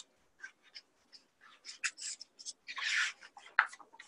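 A cardboard picture book being handled: scattered small clicks and paper rustles from its pages or flaps, with a louder rustle about three seconds in.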